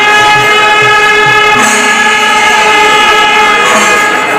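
A traditional wind horn blowing one long, loud, steady note, with drum beats faintly underneath.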